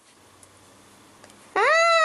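A single long cat meow, rising and then falling in pitch, starting about one and a half seconds in after faint background noise.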